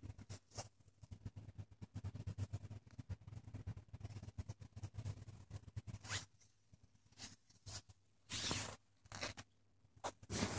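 Faint rustling and scratching on a blanket as a kitten moves about on it and is stroked by hand. There is soft crackling for the first few seconds, then several short, louder brushing sounds in the second half.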